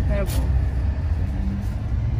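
Low, steady rumble of a car heard from inside its cabin, with a brief snatch of voice near the start.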